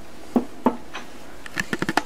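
Quiet room with two brief soft sounds, then a quick run of small clicks near the end: mouth and lip smacks of someone tasting a spoonful of hot sauce.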